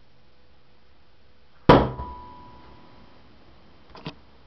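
A thrown metal shuriken striking a door: one sharp thunk about halfway through, a smaller knock just after, and a short metallic ring that fades over about a second.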